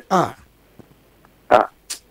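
A man's voice: a short hum falling in pitch at the start, about a second of quiet, then a brief breathy vocal sound and a short hiss near the end.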